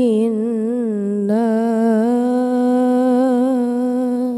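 A boy reciting the Qur'an in the melodic tilawah style, drawing out one long melismatic note. For about the first second the pitch wavers in quick ornaments. After a brief break it settles into a steadier held note with a slight vibrato.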